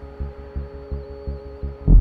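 Suspense film score: a low pulse about three times a second under steady sustained drone tones, then a loud deep boom hits just before the end.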